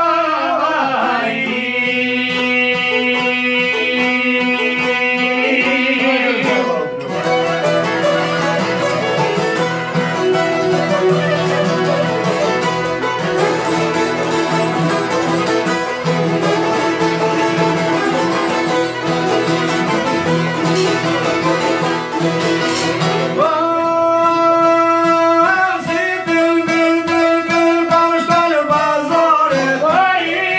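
Live Albanian folk music: a man singing long, held lines over a çifteli, violin and oud. The singing sits near the start and comes back about 24 seconds in, with the strings carrying the tune on their own in between.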